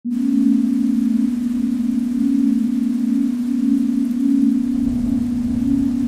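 A steady low electronic tone at about 243 Hz, throbbing gently, over a faint hiss. A low rumble joins it about five seconds in.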